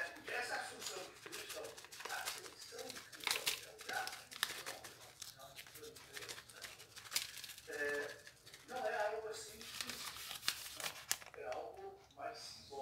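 A plastic packet of grated parmesan crinkling and rustling in irregular crackles as it is shaken to sprinkle cheese over a tray of biscuits.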